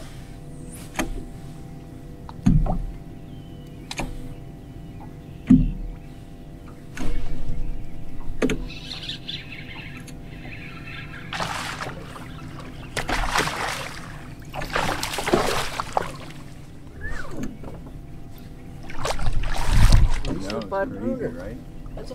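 Steady hum of an electric trolling motor holding the bass boat. A few low thumps on the boat and louder rushing noises in the second half run over it.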